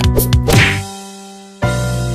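Instrumental backing of an upbeat song between sung lines: the beat plays, a short sharp hit with a swish comes about a quarter of the way in, then the drums and bass stop for about a second while a held note fades, and the full band comes back in sharply near the end.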